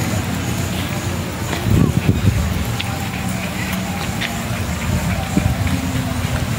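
Outdoor ambience on a handheld phone microphone while walking: a steady low rumble with faint, indistinct voices in the background.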